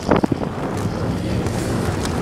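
Wind buffeting the microphone over the steady low drone of a running engine, with a short loud burst just after the start.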